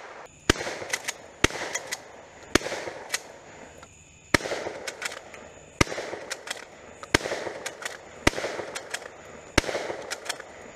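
Pistol shots fired one at a time, about nine in all, spaced roughly a second apart, each crack followed by a short fading echo.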